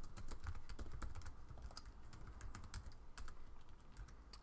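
Typing on a computer keyboard: a quick run of keystroke clicks that thins out to scattered keystrokes after about a second.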